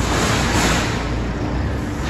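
A JCB telehandler's diesel engine running steadily as the machine drives past close by, with a rush of hiss in the first second.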